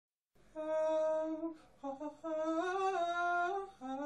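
A voice humming a slow melody in a few long held notes with short breaks between, the last one stepping up in pitch.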